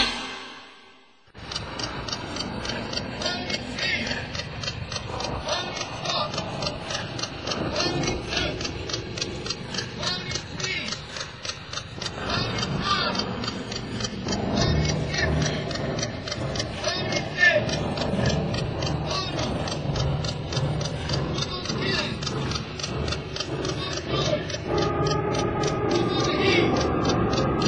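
Rapid, dense clicking and ticking, like a mechanism, starting about a second in as the rock music dies away, with faint voices and musical sounds mixed underneath.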